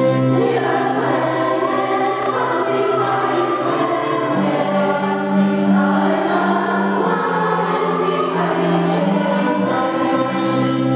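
A school choir of boys and girls singing, holding long notes.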